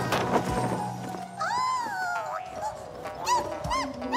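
Cartoon sound effects over background music: a clattering crash of toy cups near the start, then a character's high wordless squeaks, one long arching cry followed by several short rising-and-falling chirps.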